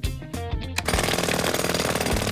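Background music, then about a second in an electric jackhammer starts up and hammers rapidly into asphalt, breaking up the road surface.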